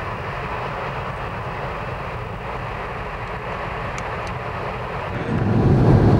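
Steady road and wind noise of cars travelling at speed. About five seconds in it turns into a louder, deeper drone of a car cabin on the move.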